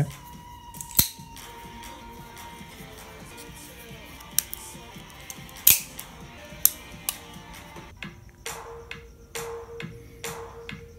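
Folding knives clacking and knocking as they are picked up one by one off a wooden tabletop: a sharp click about a second in, a few more in the middle and a quicker run of knocks near the end. Music plays faintly underneath.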